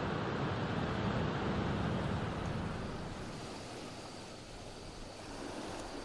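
Sea surf washing on a sandy beach, with wind on the microphone; it fades down through the middle and stays lower to the end.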